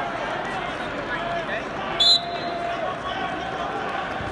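Arena crowd hubbub with scattered voices, cut about halfway through by one short, sharp blast of a referee's whistle restarting the wrestling bout.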